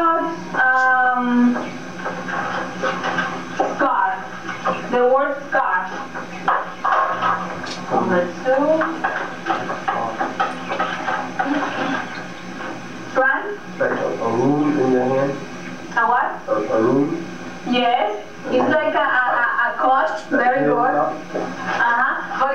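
Speech only: voices talking, not clear enough for the words to be made out, over a steady low hum.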